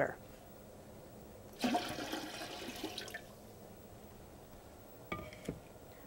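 Water poured from a pitcher into an empty metal canner, a splashing pour of about a second and a half that starts about a second and a half in and tails off. A couple of light clicks follow near the end.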